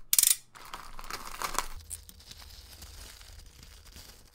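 Grey plastic postal mailer bag being ripped open and crinkled: a sharp, loud tear just after the start, then rustling and crumpling plastic as the bag is pulled open.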